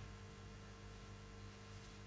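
Near silence: a faint, steady electrical hum from the microphone and sound system.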